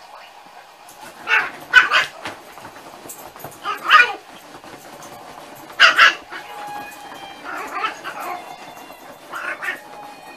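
Dogs at rough play giving short, high-pitched yipping barks in quick bursts: a cluster of three about a second in, single sharp ones about four and six seconds in, and weaker ones near the end.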